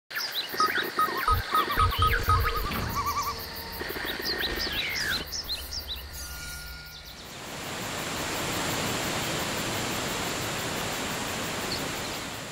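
Produced jungle ambience for a title sequence: chirping bird and insect calls with a few deep thumps through the first half, then a steady rush of waterfall noise that swells in about halfway through and holds.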